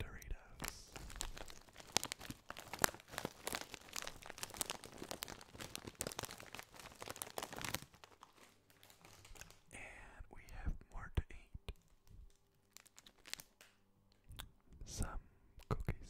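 Foil-lined crisp bag crinkled and squeezed by hand right at the microphone. It gives dense, continuous crackling for about the first half, then sparser, quieter crinkles.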